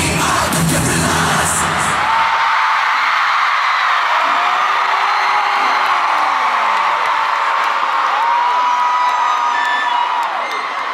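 Live concert music ending about two seconds in, drowned in a crowd of fans screaming. After that, the arena audience keeps screaming and cheering, with many long high-pitched screams rising and falling.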